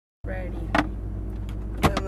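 Ferrari F430's V8 engine idling as a steady low drone, heard from inside the cabin. Two sharp knocks come about a second apart.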